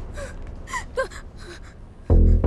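A person's short breathy gasps, about four in two seconds, some dropping in pitch, the sound of someone in distress.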